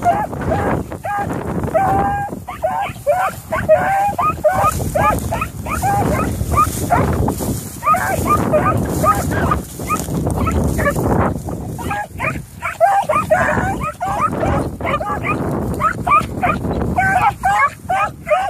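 Beagles baying on a trail: a continuous run of short, high yelps, about three or four a second, with wind rumbling on the microphone.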